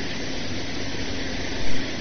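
Steady hiss with a low hum beneath it: the background noise of an old speech recording.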